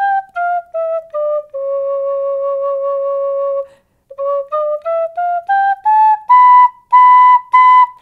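Plastic Melody flute, a child's penny-whistle-type recorder, playing four notes stepping down to a long held low note, then climbing back up note by note and ending on three louder repeated high notes. The player says its octave comes out out of pitch, and that it won't play any higher.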